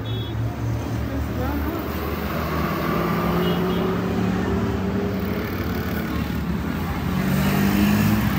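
A motor vehicle's engine running nearby, a steady hum that grows louder toward the end.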